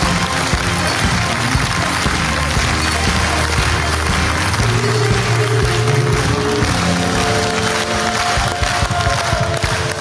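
TV quiz-show opening theme music with held synth chords over a steady beat.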